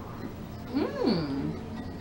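A single drawn-out vocal sound, under a second long, that rises steeply in pitch and then falls away lower than it began.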